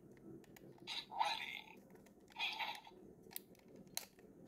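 Hands handling a hard plastic collectible gadget: two short scraping rustles about a second apart, then a couple of sharp small clicks near the end.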